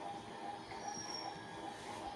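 Steady background noise with a faint hum, and a brief thin high whistle about a second in.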